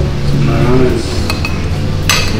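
Metal cutlery clinking against a ceramic plate while a boiled egg is cut on it, a few light clinks about a second in.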